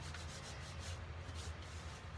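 Gloved hands rubbing and crumbling a dry, powdery mixture in a bowl: a quick series of soft, brushing scrapes over a steady low hum.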